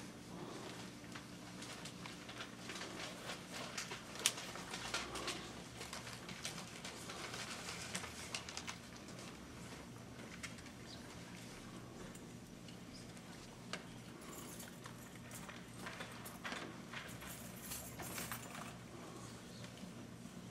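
Quiet room tone in a hushed meeting room: a steady low hum with scattered small clicks, taps and rustles, the sharpest click about four seconds in.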